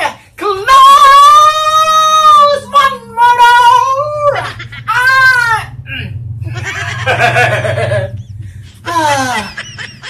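A man squealing and laughing in excitement: long high-pitched shrieks, then breathy laughter, ending with a falling squeal.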